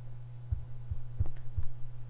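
Steady low electrical hum on the recording, with about four soft, low thumps at uneven intervals.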